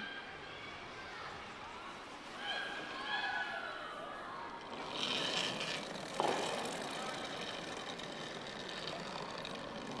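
Faint voices over the steady background of an ice rink, with a brief rush of noise about five seconds in.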